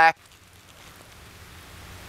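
Faint outdoor background noise, a soft even rustle that slowly grows a little louder, right after a spoken word ends.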